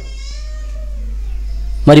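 A pause in amplified speech: the man's voice dies away in a short echo over a steady low hum from the microphone's sound system, with a faint drawn-out wavering tone in the middle. He starts speaking again near the end.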